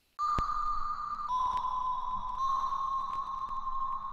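A steady high-pitched electronic tone starts abruptly, steps down slightly in pitch about a second in, then holds, with a couple of sharp clicks.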